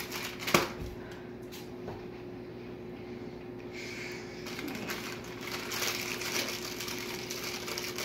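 A hot-sauce cracker being chewed, with faint crunchy clicks and rustles, a sharp click about half a second in, and a faint steady hum underneath.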